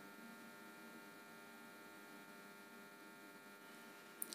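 Near silence with a faint, steady electrical hum made of many even tones.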